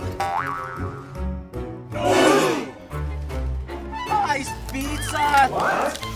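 Background music with a steady beat, overlaid with a short rising sound effect just after the start and wordless vocal exclamations in the middle and toward the end.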